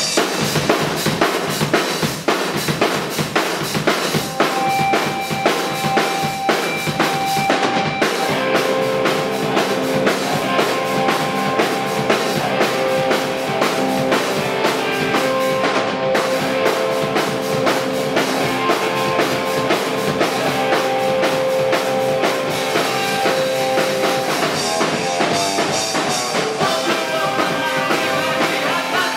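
Live hardcore punk band playing: drum kit, bass and distorted electric guitar, loud throughout, starting abruptly. Held guitar notes ring out over the drumming from about four seconds in, and the full band carries on from about eight seconds.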